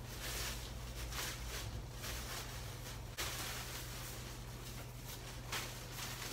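Soft, irregular rustling of a thin blue disposable long-sleeve gown as it is pulled on over the arms and shoulders, over a low steady room hum.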